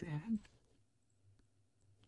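A short spoken word at the start, then a few faint computer keyboard key clicks as a filename is typed.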